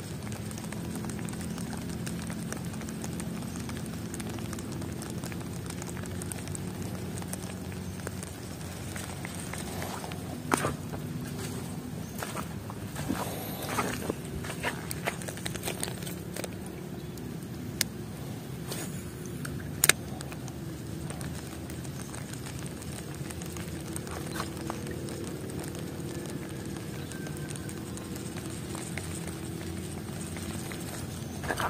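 Light rain falling steadily on the creek. Between about a third and two-thirds of the way through come scattered clicks and a few sharp knocks as the rod and spinning reel are handled during the lure retrieve.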